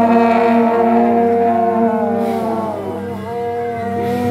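A group of long processional horns with large cog-shaped metal bells blowing loud held notes together, several pitches at once, the notes bending and sliding down and back up.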